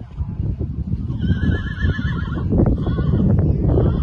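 A horse whinnying: one high, wavering call about a second long, starting about a second in. It sounds over the hoofbeats of a horse cantering on sand arena footing.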